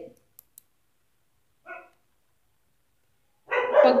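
A dog barks once, briefly, about two seconds in, preceded by two faint clicks.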